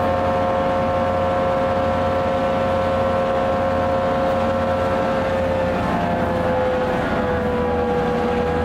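EMD diesel-electric locomotive idling, a steady low engine rumble under a strong whine; the whine sags slightly in pitch late on.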